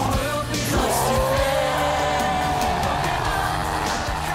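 Dramatic background score from an anime battle scene, with a sound effect sweeping down in pitch in the first second or so.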